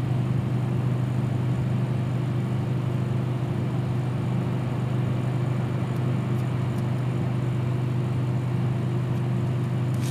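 A steady low mechanical hum that holds unchanged throughout, from a running motor.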